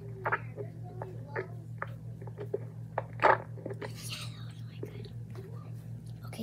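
A child whispering and making short mouth clicks and smacks into a toy microphone, over a steady low electrical hum. The loudest click comes about three seconds in, and there is a soft breathy whisper about four seconds in.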